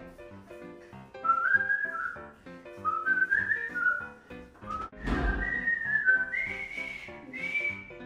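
A person whistling a tune: sliding notes that start about a second in and climb higher toward the end, over light background music.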